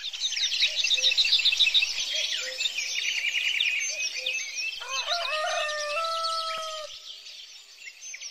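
Many small birds chirping in a dense chorus. A rooster crows once, a single long call starting about five seconds in and lasting about two seconds.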